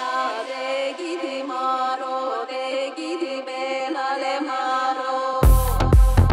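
House-music DJ mix in a breakdown: a chant-like vocal line with the bass filtered out. About five and a half seconds in, the bass and kick drum drop back in with a steady beat.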